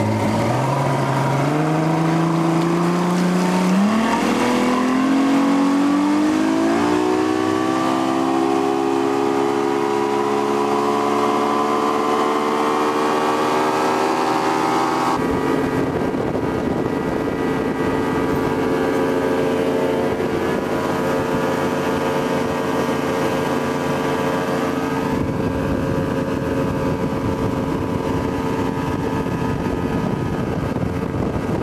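Motorboat engine speeding up, its pitch rising steadily for about fifteen seconds, then switching abruptly to a steady cruising pitch.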